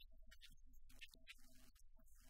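Near silence: faint room tone with a steady low hum.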